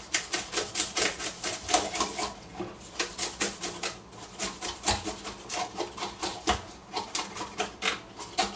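Back of a knife scraping the scales off a whole sea bass: a fast, continuous run of short, scratchy clicks, several strokes a second, with a couple of duller knocks midway.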